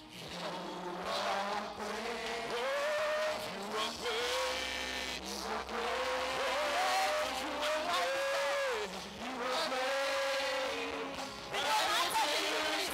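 A woman singing a slow worship song into a microphone, in long held notes that slide up and down in pitch with short breaks between phrases.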